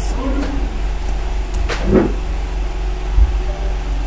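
Steady low background hum on the recording, with a brief faint vocal sound about two seconds in and a short low thump after three seconds.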